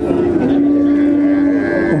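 A cow mooing: one long, steady low call that dips slightly in pitch just after it starts and ends shortly before the end.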